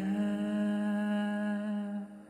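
A man's voice holding one long sung note over a sustained keyboard chord from a Yamaha Montage 7 synthesizer, dying away at the end.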